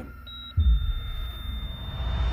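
Horror-trailer sound design: a thin, steady high-pitched tone, then about half a second in a sudden deep bass boom that carries on as a low rumbling drone.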